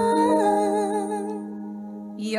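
A woman's voice holding one sung note with vibrato over a sustained instrumental chord. The voice fades out about one and a half seconds in while the chord rings on.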